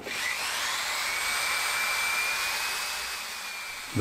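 Electric hand drill spinning up with a rising whine, then running steadily with a rasp as it turns 80-grit emery cloth on a rod inside a steel bicycle chainstay tube to polish the bore. The sound eases off a little near the end.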